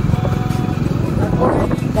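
A motorbike running at road speed with wind rumbling on the microphone, heard from the pillion seat.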